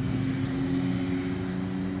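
A steady engine hum holding one pitch, over a haze of background traffic noise.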